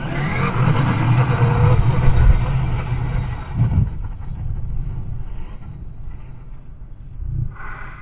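Brushless electric motor of an Arrma Talion V3 RC car whining as the car flips and then drives off across dirt, under wind on the microphone. It is loudest in the first half and dies down after about four seconds.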